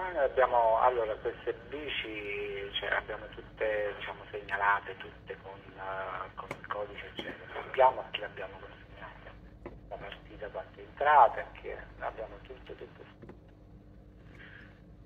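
A person talking over a telephone line. The voice sounds thin and narrow, as phone audio does, and stops about a second before the end.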